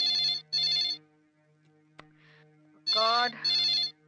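Landline telephone ringing in a double-ring pattern: two pairs of short rings, the second pair about three seconds after the first.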